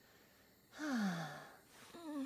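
A woman's voice giving one long sigh that falls in pitch, starting about three quarters of a second in.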